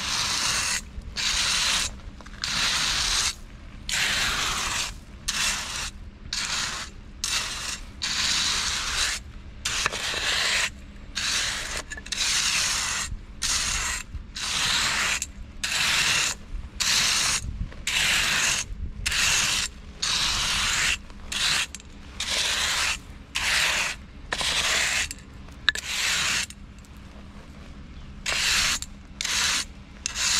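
Hand trowel scraped across loose crushed chip-stone bedding in short repeated strokes, roughly one a second with brief gaps, smoothing and levelling the screeded base; the strokes pause for a couple of seconds near the end, then resume.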